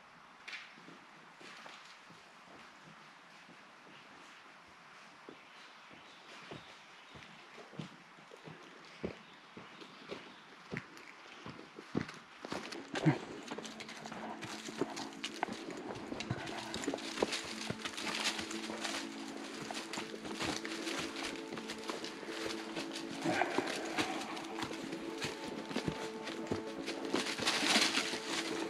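Footsteps crunching on a sandy, leaf-strewn trail, faint at first and growing louder and closer, then handling knocks and walking. About halfway through, soft background music with held tones comes in underneath.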